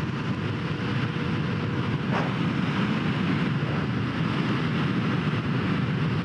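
Indian FTR 1200 S V-twin engine running steadily while cruising at about 60 mph, mixed with wind rushing over the microphone.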